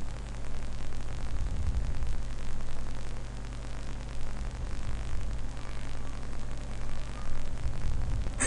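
Steady background hiss with a low electrical hum underneath, wavering slightly in level.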